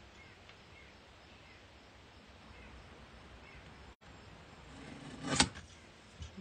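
Quiet paper-crafting sounds as a stamped cardstock greeting is trimmed out, with faint small snips, then one sharp click near the end.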